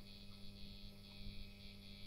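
Faint, steady electrical hum with one low tone.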